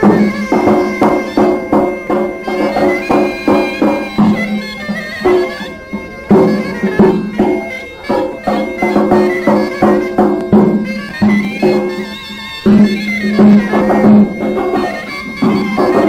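Greek folk music on pipiza, the reedy Peloponnesian shawm, playing a melody over a steady low note, with a daouli (large double-headed bass drum) beating a dance rhythm underneath.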